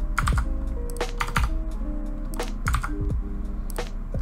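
Computer keyboard keys clicking in irregular strokes as code is typed and pasted, over background music of held notes.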